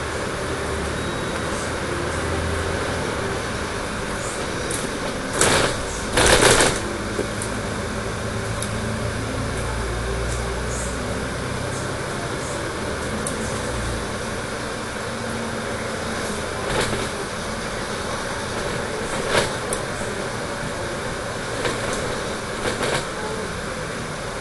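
Dennis Trident 12 m double-decker bus running on the road, heard from inside the passenger cabin: a steady engine and road rumble that swells and eases. Short sharp rattles from the bodywork, the loudest about five and six seconds in, with a few smaller ones later.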